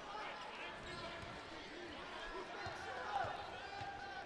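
A basketball being bounced on a hardwood court by the free-throw shooter before his shot. A few faint thuds sound over the low murmur of an arena crowd.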